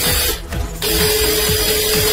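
Small electric motor of a lathe power-feed unit running with a steady whine and hiss: a brief burst at the start, then a longer run from just under a second in. Background music with a beat plays underneath.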